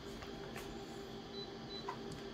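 Office colour photocopier standing idle and ready to copy, its fan and mechanism giving a steady low hum, with two faint clicks, one about half a second in and one near the end.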